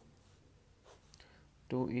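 Pencil lead scratching on paper while numbers are written, in two short strokes with a quiet gap between them.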